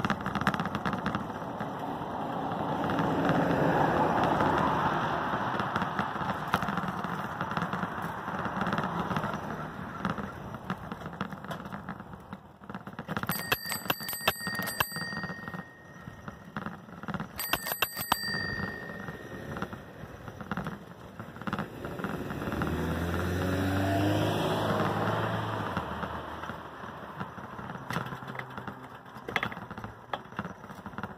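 A bicycle bell rung twice, each a quick trill of rapid strikes lasting a second or so, about four seconds apart, over a steady rush of wind and road noise from riding. Later a passing motor vehicle's engine rises in pitch.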